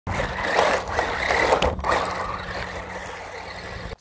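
A 3D-printed electric RC buggy driving on dirt: a steady motor whine over the noise of its tyres on loose ground, getting gradually quieter as it moves off.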